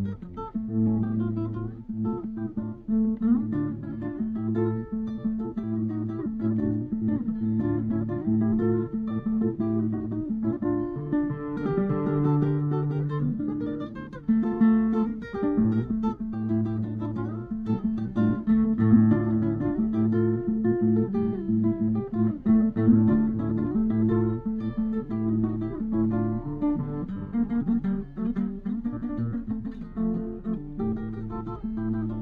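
Nylon-string classical guitar played solo, fingerpicking an instrumental piece.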